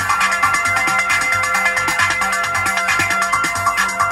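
Electronic dance track played on Roland drum machines and a Juno-60 synthesizer: a high, ringing synth line held over a fast, even drum-machine pattern of hi-hat ticks and a repeating low pulse.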